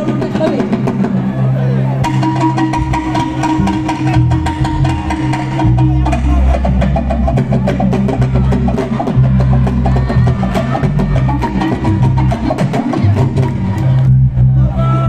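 Live Senegalese mbalax band playing at full volume: fast, dense hand-drum and kit drumming over bass guitar and electric guitars, with a voice over the PA.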